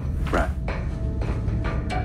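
Background music from a TV drama's soundtrack with a low steady drone, under one short spoken word near the start.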